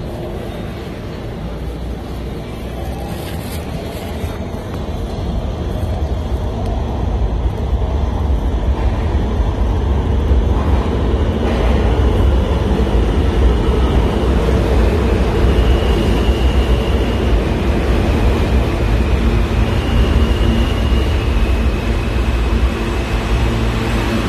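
New York City subway train rumbling through the station, the low rumble building over the first several seconds and then holding steady, with thin high squeals from the wheels in the second half.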